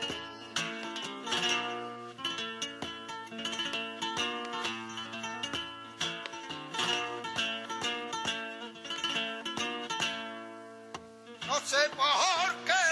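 Flamenco guitar playing an instrumental passage in bulerías por soleá, quick plucked runs broken by sharp strummed strikes, between sung verses. The singer's voice comes back in at the very end.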